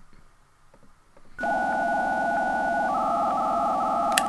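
Synthesizer intro sting: after a quiet first second or so, a steady electronic synth tone comes in suddenly about a second and a half in and holds, its high note stepping down slightly near the end.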